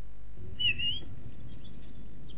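A robin giving one short, high chirp that rises slightly, about half a second in.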